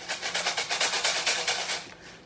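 Homemade paper-plate tambourine with rice sealed inside, shaken quickly: a fast, even rattle of about ten strokes a second that fades out near the end.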